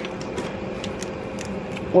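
Light scattered clicks and rustling of plastic items being handled and shifted inside a plastic storage basket.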